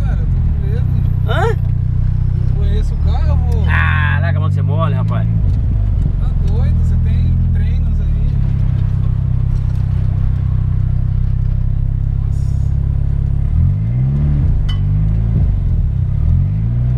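Engine of a tuned turbocharged VW Golf (about 300 hp), heard from inside the cabin, running under load at fairly steady revs. About three-quarters of the way through, its note drops and then climbs again.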